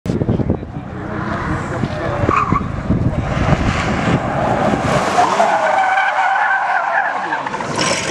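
Tyres of an Audi e-tron GT skidding as the electric car drifts, with no engine note heard. A rough rumble of tyre noise gives way, about five seconds in, to a steady squeal.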